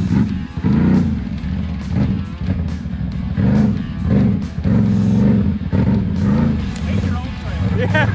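Lifted ATV engine revving in repeated bursts, each rising and falling about once a second, as the machine is throttled from beside it while stuck in deep mud.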